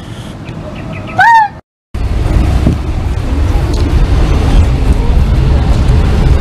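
Steady low engine and road rumble heard inside the cabin of a moving van. It starts abruptly about two seconds in, after a short, loud call that rises and then falls in pitch.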